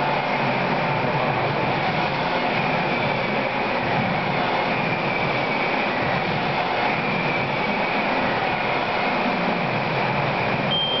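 Steady, unbroken rushing mechanical noise with faint wavering high whines running through it.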